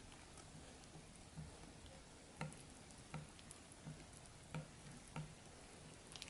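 Silicone whisk stirring thick chocolate madeleine batter in a glass bowl, faint, with soft taps of the whisk against the bowl about three times every two seconds.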